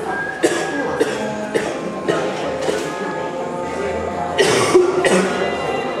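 Background music playing over the queue area's loudspeakers, with short, loud, noisy bursts about half a second in and again around four and a half seconds in.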